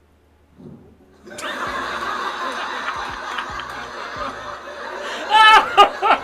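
A comedy club audience breaks into laughter about a second in and keeps laughing. Near the end a man laughs loudly and close to the microphone, over the crowd.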